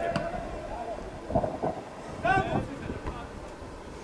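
Voices shouting across an open football pitch during play, with the loudest call about two seconds in.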